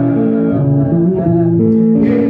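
Live gospel band music: an instrumental passage of guitar and bass guitar playing held notes that step from one pitch to the next.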